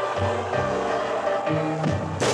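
Live band playing an instrumental introduction: held chords over a bass line that steps from note to note.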